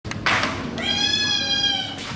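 A sliding door opening with a brief rush of noise, then a kitten giving one long, high meow that falls slightly in pitch.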